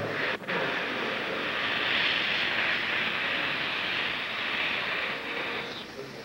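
Dental air syringe blowing a steady hiss of compressed air onto a child's tooth to dry it so the tooth can be seen. After a brief break about half a second in, the hiss runs on and stops just before the end. It is loud enough to be called "too much noise".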